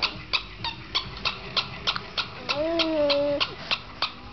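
A small dog whines once, one drawn-out whine of about a second in the latter half. Under it runs a rapid, regular clicking of about three clicks a second.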